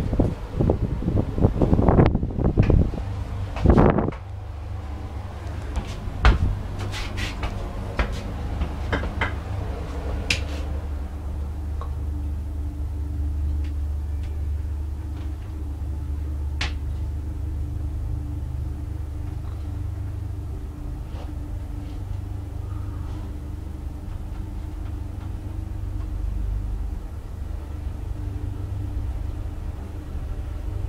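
Traction elevator: a few loud knocks and clicks in the first four seconds as the car doors finish closing, then the car travels upward with a steady low hum and rumble, with a few faint clicks along the way.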